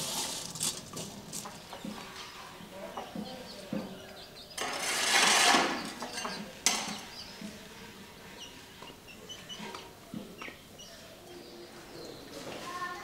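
Seeds scraping and clicking on a large metal tray as they are stirred by hand over a wood fire, then a loud rushing noise lasting about a second near the middle, followed by a single sharp click and faint scattered ticks.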